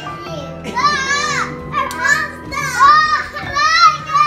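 Young children calling out in high voices, several short arching calls one after another, over music playing in the background.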